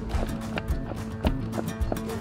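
A harnessed horse's hooves clip-clopping on a dirt road as it pulls a carriage, with music playing over the sound.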